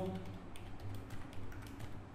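Computer keyboard keys tapped in a quick, irregular run of faint clicks as digits are typed.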